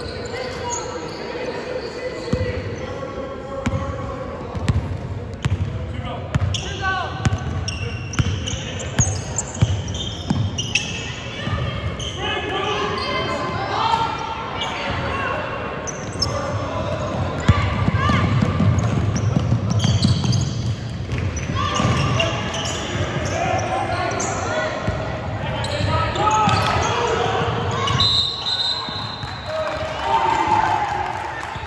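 Basketball game in a gym hall: a basketball bouncing on the hardwood court, with players' and spectators' voices echoing through the hall.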